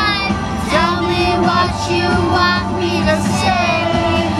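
A young girl singing along to a pop song playing on a car stereo.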